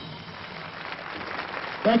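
Audience applauding after a jazz tune ends, a steady patter of clapping, with a man's voice starting to speak over it near the end.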